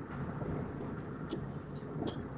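Steady low background noise from an open videoconference microphone, with a couple of faint soft clicks.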